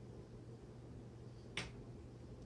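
A single short, sharp click about one and a half seconds in, over a faint steady low hum.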